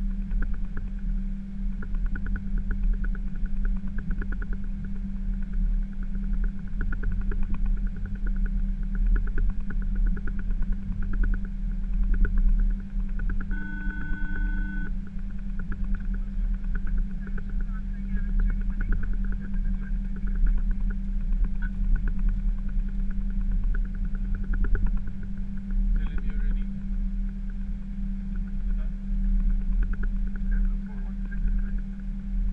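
Steady low hum and rumble inside the cockpit of an Airbus A320 as it taxis. A short electronic tone sounds about halfway through.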